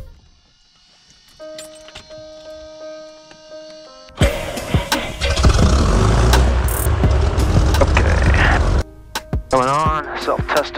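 After a short steady musical sting, the six-cylinder engine of a Piper Cherokee Six (PA-32-300) runs loudly just after start-up from about four seconds in, cutting off abruptly near the end.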